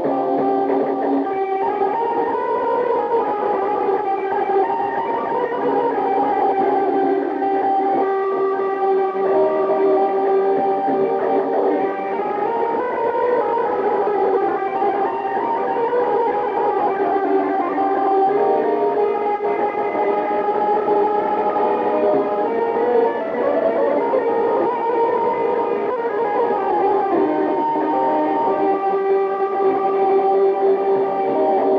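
Electric guitar with effects playing a continuous melody in Azerbaijani wedding-music style, with long sustained notes.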